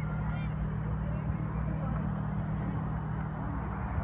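A water bird calling a few times in quick succession near the start, over a steady low rumble.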